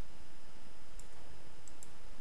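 Steady background hiss with a few faint computer-mouse clicks, one about a second in and two close together near the end.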